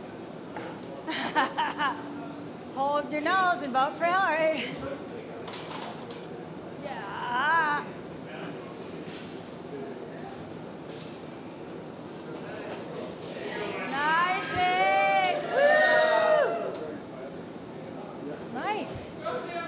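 Glassblowing studio noise: a steady furnace and glory hole roar under occasional sharp metal clinks of hand tools, with people's voices calling out in bursts.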